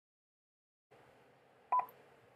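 Dead silence for about the first second, then faint room tone with one very short beep-like blip near the end.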